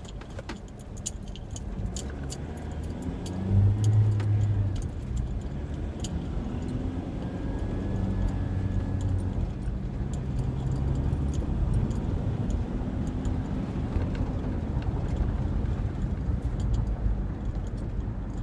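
Inside a Ford's cabin while driving: a low engine and road hum whose pitch rises and falls a few times, with small rattling clicks throughout. It swells loudest about four seconds in.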